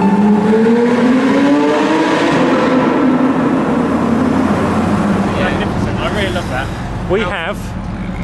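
A sports car's engine heard from inside the cabin in a road tunnel, accelerating with its pitch rising over the first few seconds and then holding steady.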